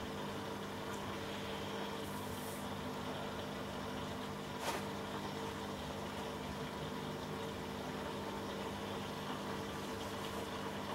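An aquarium-type water filter pump runs steadily with a low hum. A single faint click comes about halfway through.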